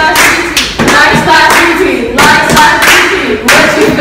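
A group of young people clapping together while chanting in a call-and-response game, sharp hand claps mixed with several voices.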